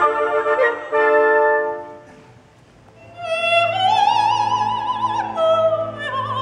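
Operatic soprano singing with orchestra. A phrase ends about two seconds in, the music drops briefly, then the voice rises to a long, high note with wide vibrato.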